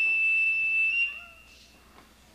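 Firefighter's PASS (personal alert safety system) alarm sounding one steady, high-pitched electronic tone that cuts off about a second in and fades away. It is the alert that a firefighter has stayed motionless too long and needs help.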